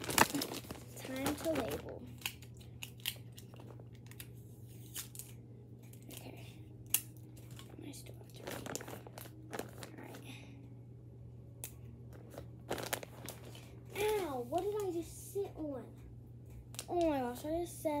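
Crinkling and rustling of things being handled, with short tearing sounds of tape pulled from a roll for labelling belongings, as scattered small clicks and rustles. A child's voice is heard briefly twice near the end.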